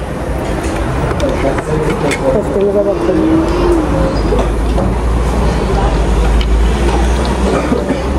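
A woman's voice over a steady low rumble, which grows louder about halfway through.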